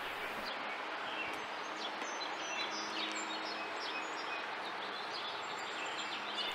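Steady outdoor background hiss with faint, scattered bird chirps.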